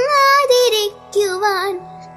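A solo voice singing a Malayalam poem (kavitha) as a melodic tune, the pitch gliding and bending between held notes. The sung line breaks off shortly before the end, leaving a short pause.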